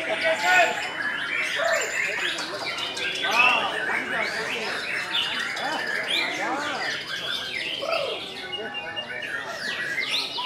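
Several caged songbirds singing at once in overlapping whistled and chirped phrases, a white-rumped shama among them.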